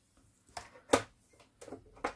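Clear plastic storage case of Distress ink refill drops being handled and shut: a few sharp plastic clicks, the loudest about a second in, with fainter ticks near the end.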